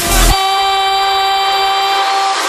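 A single horn blast held steady on one pitch for about two seconds, starting a moment in, in a break in dubstep background music.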